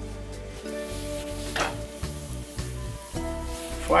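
Background music over the light sizzle of flaxseed oil on a hot cast iron skillet as a cloth wipes it around the pan, with one short swish about one and a half seconds in.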